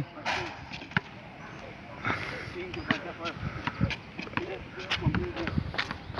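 Scattered sharp knocks of a ball bouncing and being kicked, and of footsteps, on a concrete court, with faint voices in the background.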